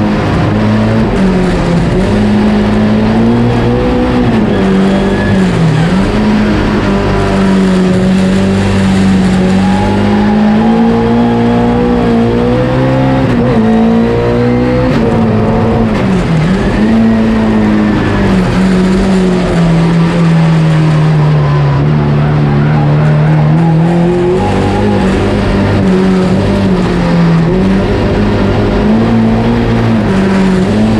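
Fiat 133 folk-race car's engine pulling hard while driving, heard from inside the stripped cabin; its note rises and falls with the throttle and gear changes, dropping sharply a couple of times as the driver lifts off.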